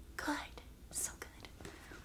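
A woman's voice saying one soft word, followed about a second later by a short breath-like hiss, then low room tone.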